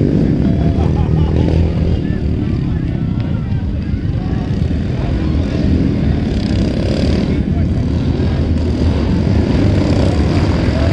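Racing motorcycle engines running steadily as riders circle a dirt track, mixed with the voices and shouts of spectators.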